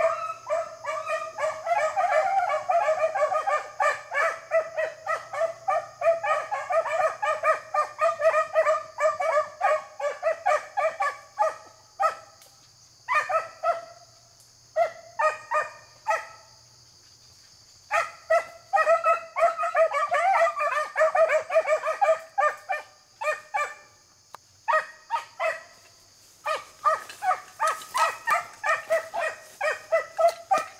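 Beagle hounds baying in chorus, rapid overlapping cries as they run a rabbit's scent trail through brush. The cries come in long runs, thin out about halfway through and stop briefly twice before picking up again.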